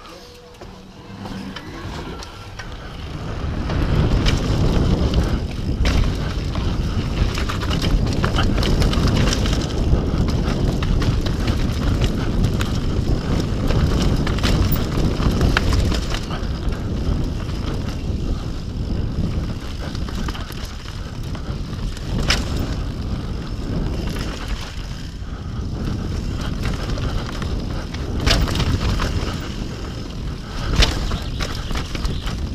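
Downhill mountain bike riding a dirt forest trail, heard from a camera on the rider: wind buffeting the microphone and tyres rolling over dirt, with sharp clicks and rattles from the bike over bumps. It is quieter for the first few seconds, then louder from about four seconds in as the bike picks up speed.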